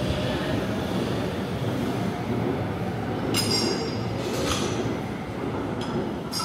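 Stockholm metro train pulling out of the station and running away into the tunnel: a steady rumble echoing along the platform, with a few short, sharp metallic clinks about halfway through and near the end.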